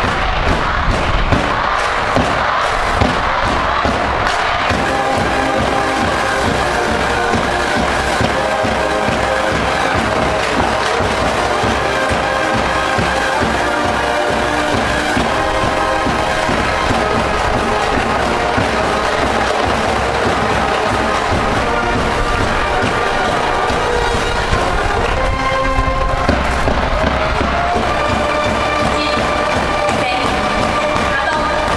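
High-school brass band cheering section in the stands playing a fight song with drums, the crowd's voices mixed in. The first few seconds are a dense wash of crowd noise and percussion, and the brass melody stands out from about five seconds in, over a steady low wind rumble on the microphone.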